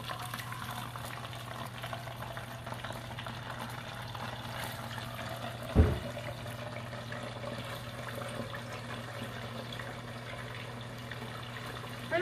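Hot oil bubbling and sizzling in a pot as thin-cut raw potatoes are dropped in a handful at a time to deep-fry into french fries. A single dull thump sounds about six seconds in.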